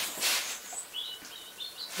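A small bird chirping: a quick run of about five short, high chirps in the second half, with a single higher note just before. Soft rustling is heard in the first half.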